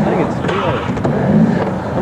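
Skateboard wheels rolling over a vert ramp as the skater rides the wall and comes back down, a continuous noisy rumble, with indistinct voices among it.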